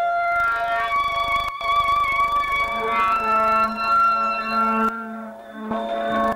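A band playing long, wavering held notes on a wind instrument, with a low held note coming in about halfway and a brief break in the sound near the start.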